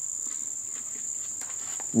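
A steady high-pitched insect trill, with a couple of faint clicks near the end.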